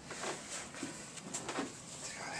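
Soft rustling and a few light knocks as work boots are taken off and set down on a carpeted floor.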